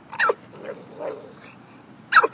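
Pit bull barking on a guard command: one sharp bark with a quickly dropping pitch near the start, followed by two much fainter sounds.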